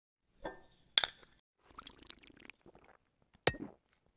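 Glass clinking: a light clink, a sharp ringing clink about a second in, a stretch of small rattling, then another sharp ringing clink near the end.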